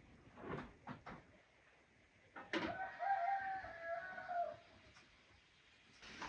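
A rooster crowing once in a single drawn-out call of about two and a half seconds, starting roughly halfway through and sagging in pitch at the end. It comes after a couple of light knocks near the start.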